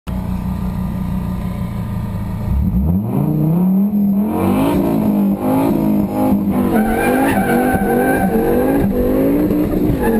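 Turbocharged Fiat Coupé 20V Turbo's five-cylinder engine, heard from inside the cabin: it idles, then about two and a half seconds in the revs climb sharply and are held high, rising and dipping again and again at the start of a drag run. Near the end the note drops and climbs once more.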